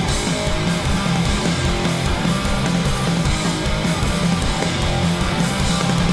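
A live Oi!/punk band playing loud and steady: distorted electric guitars, bass and drums.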